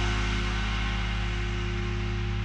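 Electronic music from a DJ mix: a sustained low bass drone and held tones under a hissing wash, with no beat, slowly getting quieter.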